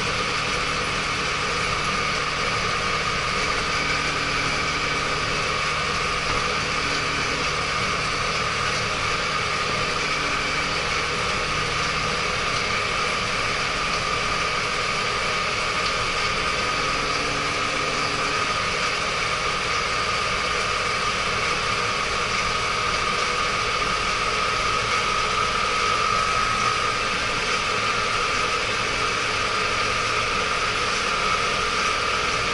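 Diesel engine of a 75-horsepower ISEKI tractor running steadily while driving on the road, heard from inside the cab, with a steady high whine over the engine hum. The whine gets slightly louder near the end.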